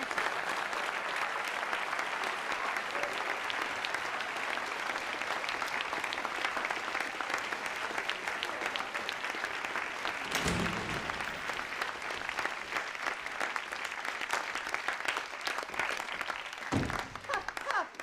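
Sustained applause from a room full of people clapping, held at a steady level throughout.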